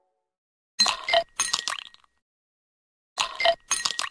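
Logo-sting sound effect of glassy clinks: two quick strikes with a short bright ring about a second in, then the same pair again near the end.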